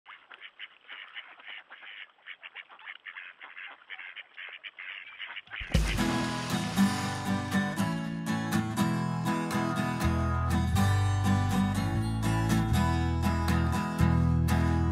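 Faint quacking of ducks for the first five or so seconds, then music cuts in suddenly with a low thump: the song's instrumental intro with guitar and a steady bass line.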